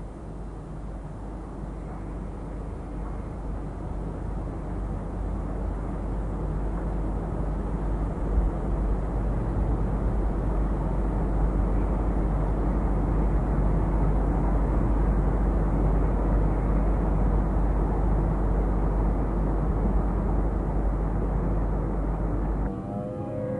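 Steady rushing background noise with a deep hum underneath, growing louder over the first half and then holding level.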